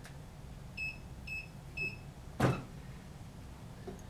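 Mug heat press control panel beeping three times in quick succession, short high electronic beeps about half a second apart, as it is set or started. A single sharp clack about two and a half seconds in, the loudest sound, from the press being handled.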